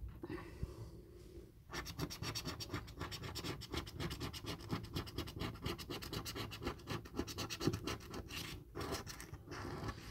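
A coin scraping the silver latex coating off a paper scratchcard in quick repeated strokes. The scratching starts about two seconds in, runs fast and steady, and pauses briefly near the end before a few more strokes.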